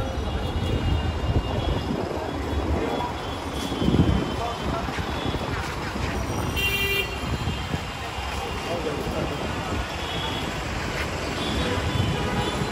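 Busy city street traffic: engines running and the chatter of passers-by, with a low rumble that swells loudest about four seconds in. A short vehicle horn toot sounds about six and a half seconds in.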